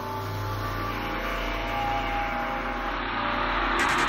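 Dark psytrance track intro: sustained synth tones under a swelling noise sweep that grows steadily louder, building up before the beat, with a fizzing high layer coming in near the end.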